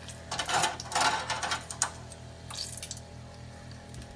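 An egg roll deep-frying in hot oil in a stainless saucepan, sizzling and crackling, loudest in the first two seconds with a sharp click near the end of that stretch, then settling to a steadier, quieter sizzle.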